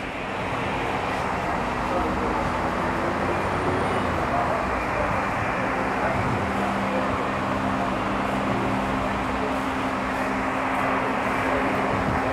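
Steady road traffic noise with a low, even engine hum underneath.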